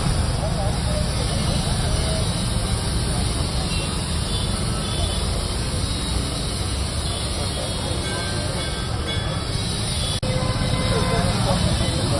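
Steady outdoor ambient noise with a heavy low rumble, and faint voices talking in the background.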